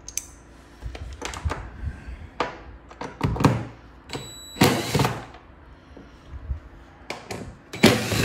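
Scattered clicks and knocks of a Torx T40 bit being fitted into a cordless drill/driver's chuck and the drill being handled, the loudest about five seconds in.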